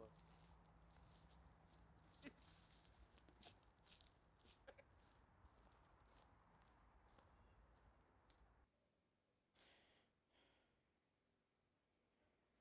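Near silence: faint background tone with a few scattered faint clicks. The low hum underneath cuts off about nine seconds in, leaving an even quieter room tone.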